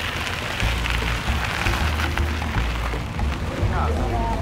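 An even, rough rolling noise from a cargo trike loaded with produce crates being ridden along, over background music with a bass line.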